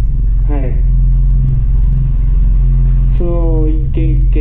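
A loud, steady low drone runs under a man's voice, which speaks briefly about half a second in and again near the end.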